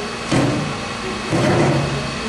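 Sheet-metal chip pan sliding in the lathe's stand: two scraping slides, the second about a second in and a little longer.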